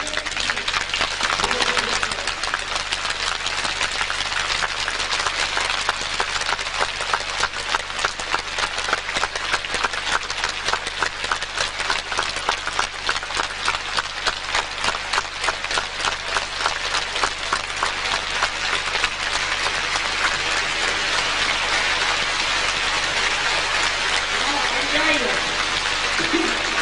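Large audience applauding, the clapping running in a steady rhythm of about three swells a second.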